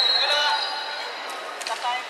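The end of a referee's whistle blast, a steady shrill tone that fades out just after the start, as play stops. Players' voices and a few sharp clicks follow in the hall.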